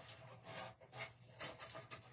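Paper banner pieces rustling and brushing against the craft board as they are handled and shifted into place, in short faint strokes.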